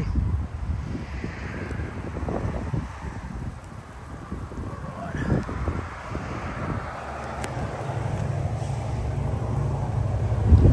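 Wind buffeting a phone microphone: an uneven low rumble that swells and drops in gusts, over a steady hiss of light rain.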